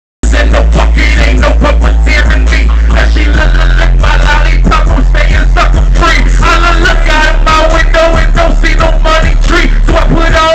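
Live hip hop played loud through a stage PA: a heavy bass line, changing note about three and a half seconds in, under rapped vocals on the microphone.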